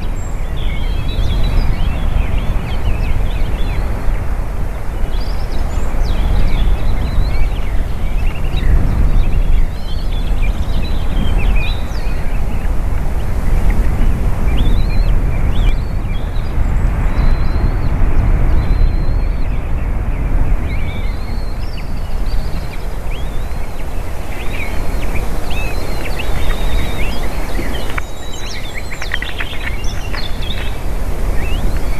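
Wind buffeting an outdoor microphone with a steady low rumble, while small birds call and sing faintly in the forest, more busily near the end.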